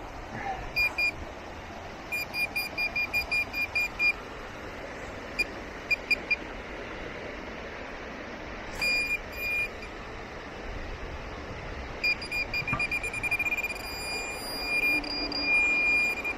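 Metal detecting pinpointer beeping at a single high pitch over a dug hole: bursts of quick beeps, and near the end the beeps speed up until they run together into a steady tone as the probe closes on the target.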